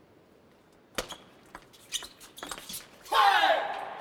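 Celluloid-type table tennis ball clicking off the bats and table in a short, fast rally, after a quiet pause for the serve. About three seconds in, a loud burst of cheering and shouting as the point is won.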